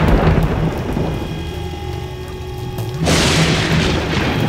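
Dramatic background score: a low rumble under several held steady tones, then a sudden loud crash of rushing noise about three seconds in.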